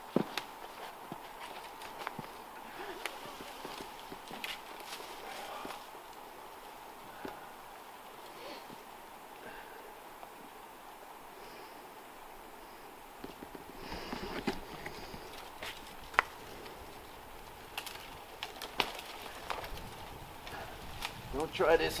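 Faint, scattered clicks and knocks of a tree climber's rope gear and boots against the trunk, with wind rumbling on the microphone from about two-thirds of the way in.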